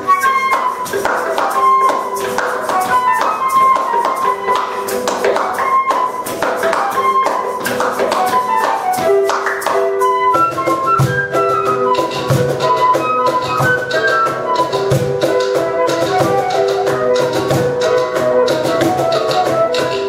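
Cumbia played live on a lever harp with hand percussion: a triangle and a shaker tick steadily over the plucked harp notes. About halfway through, the low beats of a cajón come in.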